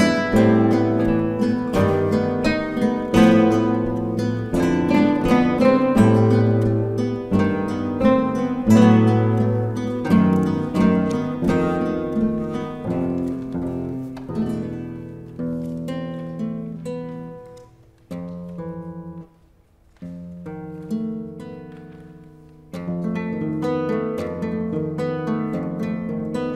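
An ensemble of classical guitars playing together, many plucked notes overlapping. The music thins out and falls almost silent for a moment about three-quarters of the way in, then swells back near the end.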